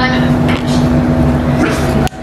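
A steady low hum and rumble under a narrated video played back through a small camera's speaker, with a voice saying "Whisker" near the end.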